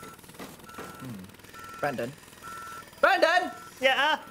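A reversing alarm beeping steadily at a single pitch, about one short beep a second. A man's voice comes in briefly near the end.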